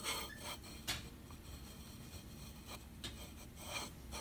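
Faint scraping of a surveyor's carbon marker rubbing along the stone teeth of a dental cast as the cast is moved against it, marking the survey line; a few short scrapes.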